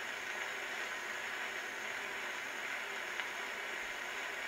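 Steady hiss of record surface noise from an acoustic phonograph, the stylus running on in an empty stretch of groove once the recitation has ended. A faint tick comes about three seconds in.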